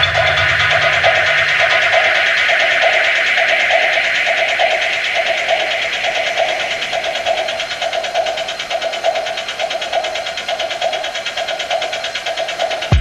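Techno breakdown with no kick drum: the deep bass drops out about two seconds in, leaving a synth tone that pulses about twice a second over a fast, hissing high texture that slowly fades.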